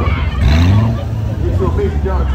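Corvette V8 revving briefly as the car drives off, its pitch rising about half a second in, over a steady low exhaust rumble and crowd chatter.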